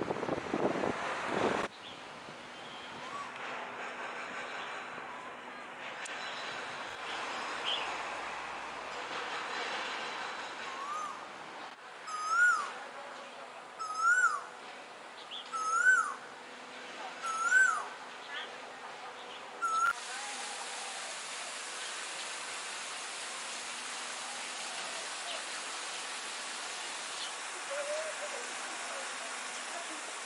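A bird calling outdoors: five loud whistled notes, each rising then falling, about two seconds apart near the middle, then one short note, over a steady background hiss.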